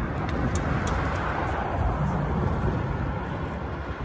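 Steady low rumble of a train moving slowly along the tracks, with no clear beat or sudden sounds.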